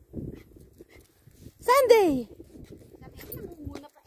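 A single short vocal cry, loud and sliding down in pitch, about halfway through, over a faint low rumble.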